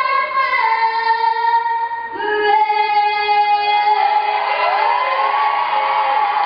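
A six-year-old girl singing the national anthem solo in a big, strong voice, holding a few long notes one after another as the song nears its end.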